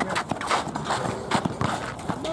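A run of irregular hard knocks from a basketball game on an asphalt court: the ball bouncing and players' sneakers hitting the pavement.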